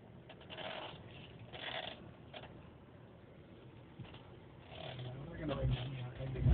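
Quiet car cabin with a few faint brief rustling sounds; about five seconds in, a low engine note comes up as the vehicle moves off.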